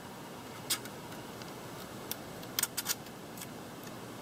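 A few light clicks of small plastic drone parts being handled as a gear is fitted back into a motor arm: one a little under a second in, then three close together near three seconds, over faint room hiss.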